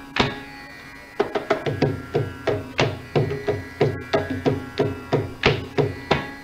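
Mridangam strokes over a steady drone, with no voice or violin: a few spaced, ringing strokes, then a fast rhythmic run from about a second in.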